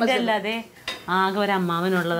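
Metal ladle clinking and scraping in a steel kadai on a gas stove, with a sharp clink a little under a second in.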